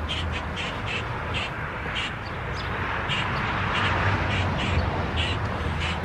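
Birds giving short, sharp calls, repeated irregularly about two or three times a second, over a steady outdoor background noise.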